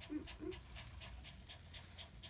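Toy poodle in labor panting faintly and quickly, about four short breaths a second. A faint short vocal sound or two comes in the first half-second.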